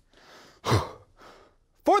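A man sighs once, a breathy exhale with his voice falling in pitch, a little under a second in, with softer breathing around it.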